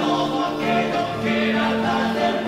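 Andean folk song: several men's voices singing in harmony on long held notes, with charango, ronroco and nylon-string guitar accompanying.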